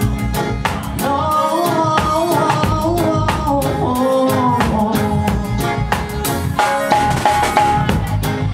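Live band playing a song with a steady drum-kit beat, and a male singer's voice carried over it on a microphone.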